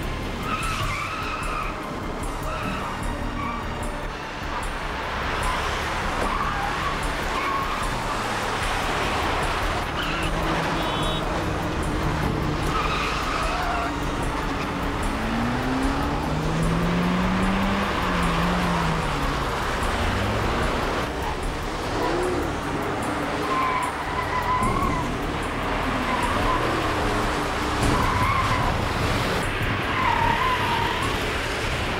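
Car engines running hard with repeated tyre squeals, as in a car chase, with music underneath.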